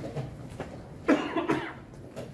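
A person coughing, a short double cough about a second in, with faint knocks of chess pieces being set down on a wooden board around it.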